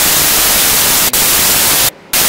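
Loud static hiss cutting in over the audio, an even rush with a faint click about a second in. It drops out suddenly near the end and then comes back. This is a fault in the audio signal rather than a sound in the room.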